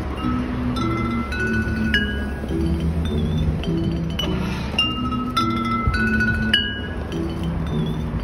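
Glass-bottle instrument of a street musician, bottles hung on a frame and struck to play a ringing, chiming melody of clear notes that each start sharply and sustain. A steady low rumble of city traffic runs underneath.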